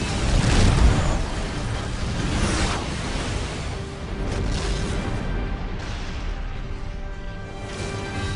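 Movie-trailer music with a heavy low boom hit about a second in, followed by whooshing sweeps and sustained held tones.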